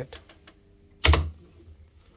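Electrical control panel: a single loud mechanical clack about a second in, as the tripped pump's motor protection breaker is reset.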